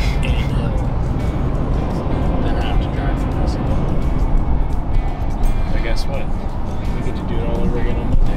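Music with singing, over the steady low road noise of a car cabin at highway speed.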